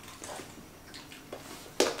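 People chewing foul-tasting jelly beans, with faint mouth noises. Near the end comes a sudden loud gagging sound as one starts to spit the bean out.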